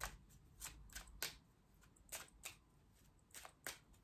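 A tarot deck shuffled by hand: a faint, irregular series of short card snaps and slides.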